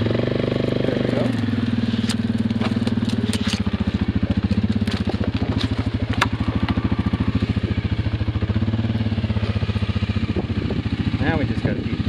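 ATV engine running in four-wheel drive and reverse, revving briefly at first and then holding a steady low-speed pull. Pine branches scrape and snap against the machine in a run of sharp clicks through the middle.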